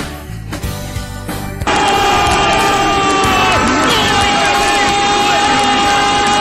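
A short music break that cuts off abruptly about a second and a half in, replaced by loud football stadium crowd noise from a radio broadcast, with several steady high tones held over the crowd.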